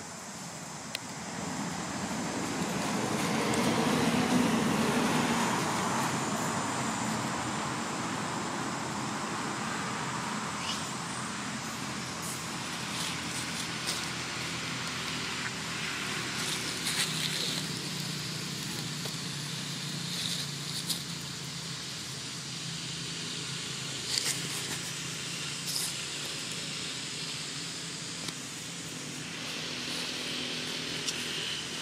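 Steady outdoor background rumble that swells over the first several seconds and then settles, with faint crackles of dry leaves now and then.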